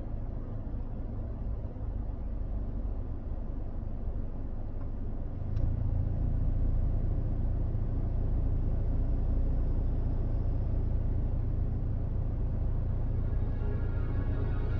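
Low, steady rumble that grows louder and heavier about five and a half seconds in, with a faint click at that point.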